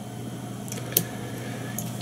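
Scissors snipping once, about a second in, trimming the leftover body material off a fly being tied, over a steady low hum.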